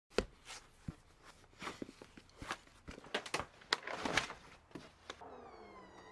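Hiking boots scuffing and knocking on a concrete floor: a run of irregular short taps and scrapes. Near the end a faint whine with several overtones falls in pitch.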